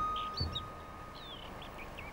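Faint bird chirps and short calls, one of them gliding down in pitch, while the last held note of flute music dies away in the first second. A soft thump comes about half a second in.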